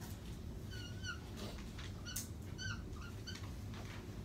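Dry-erase marker squeaking on a whiteboard as lines are drawn: several short, high squeaks, with a few scratchy strokes between them.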